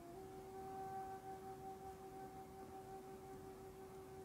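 Faint background meditation music: a single steady drone tone that steps slightly up in pitch at the start and then holds level.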